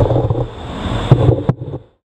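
Wind buffeting the bike camera's microphone over street traffic, with a low rumble and a couple of knocks in the second half; the sound cuts off suddenly near the end.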